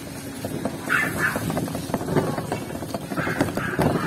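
Bicycle pedicab with sidecar rattling and clicking as it rolls over a concrete street. Two short double calls stand out, one about a second in and one near the end.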